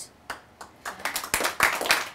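Audience clapping, starting about a second in after a brief quiet and going on as a dense patter of many hands.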